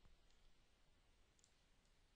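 Near silence: faint room tone with a couple of very faint computer mouse clicks.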